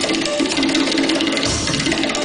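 Tabla played solo in a fast, dense run of strokes, the tuned right-hand drum ringing through them. A deep bass stroke from the left-hand drum comes about one and a half seconds in.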